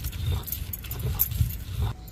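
Stone roller worked back and forth over a flat stone grinding slab, grinding a paste: repeated gritty scraping strokes with a low rumble under each.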